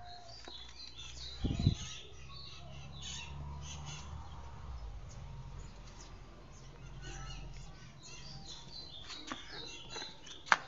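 Birds chirping in the background, with a single sharp knock about a second and a half in.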